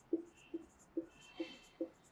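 Marker pen writing on a whiteboard: a row of zeros drawn one after another, about five short strokes in two seconds, each a soft tap with a faint squeak.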